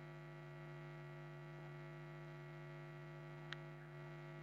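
Faint, steady electrical mains hum in the recording. About three and a half seconds in comes one short click, a computer mouse click.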